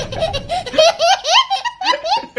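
A young child laughing hard in a rapid string of short, high laughs, several of them rising in pitch.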